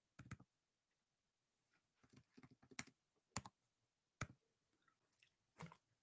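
Faint, scattered clicks of computer keys, a handful spread over several seconds, as a bet amount is typed into a betting slip.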